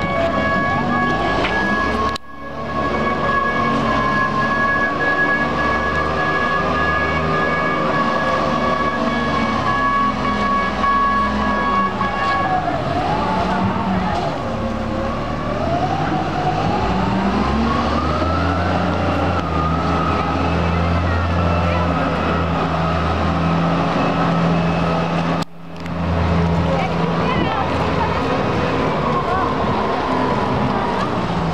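SANY reach stacker working a shipping container: its diesel engine runs under load with a high whine that holds steady at first, then dips and rises in pitch as the boom lifts and the machine moves. The engine note grows heavier in the second half. The sound drops out briefly twice.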